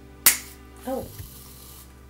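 Aerosol can of hair mousse hissing as foam is dispensed into a hand, the hiss stopping just before the end. A sharp click sounds about a quarter second in, just before the hiss.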